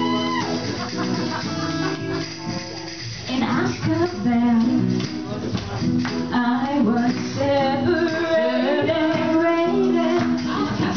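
Live band playing a song: keyboard and acoustic guitar with singing voices over them, briefly thinning out about two to three seconds in before the full band comes back in.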